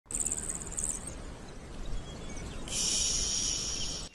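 Outdoor ambience dominated by insects: a pulsing high chirping in the first second, then a louder, steady high buzz from about two and a half seconds in, over a low rumble of background noise.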